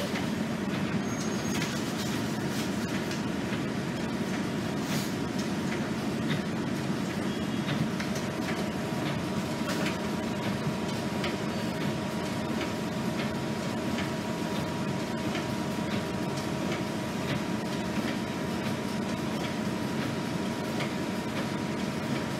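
Interior of an RTS transit bus standing still with its diesel engine idling: a steady low hum with a thin constant whine above it and a few faint ticks.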